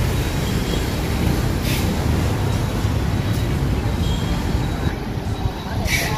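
Steady street-traffic noise: a continuous low rumble of motorbikes and other vehicles passing on a busy city road.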